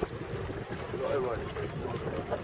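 Wind buffeting the microphone, a steady low rush, with a faint voice talking about a second in.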